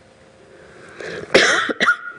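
Sound from a live call-in phone line that has just been put through: a hiss rising over the first second, then a loud, harsh, cough-like burst about one and a half seconds in and a shorter one just after.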